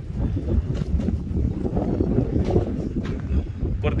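Wind buffeting a phone's microphone outdoors: a loud, irregular low rumble that rises and falls with the gusts.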